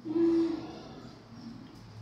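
Chihuahua giving one short, low whimper right at the start as it gets an injection, a sign of the sting of the needle.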